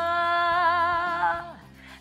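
A woman singing a cappella, holding one long note with a slight vibrato that fades out about a second and a half in.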